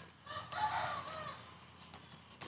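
A rooster crowing once, about a second long, above faint scuffing of hands working potting soil.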